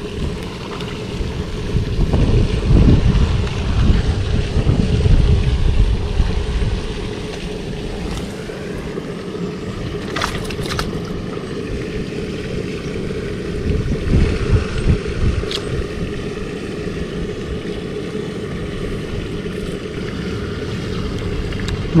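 Wind buffeting the microphone, a heavy low rumble that is strongest in the first several seconds and then eases to a steadier rush, with a couple of brief sharp clicks around the middle.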